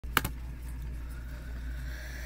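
A steady low hum, with two sharp clicks close together about a fifth of a second in.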